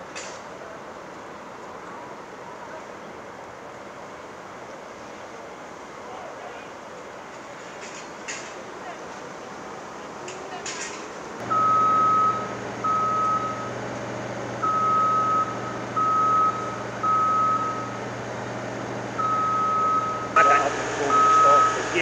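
Steady outdoor background noise. About halfway in, a construction machine's warning beeper starts: one high tone sounding in uneven on-and-off beeps over a low engine hum.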